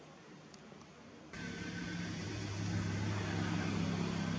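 Faint background hiss, then about a second in a sudden switch to a steady low motor-vehicle engine hum that slowly grows louder.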